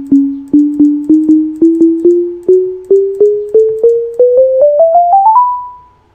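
Chrome Music Lab's Sound Waves keyboard playing pure electronic tones, one note at a time, climbing steadily up the keyboard over about two octaves. Each note starts with a click, and the notes come faster toward the end. The top note is held and fades out near the end.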